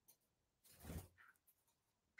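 Near silence: room tone, with one brief faint rustle about a second in.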